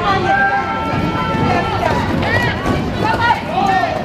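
Quad roller skates rolling and clattering on a rink floor during roller derby play, with several voices calling out over them.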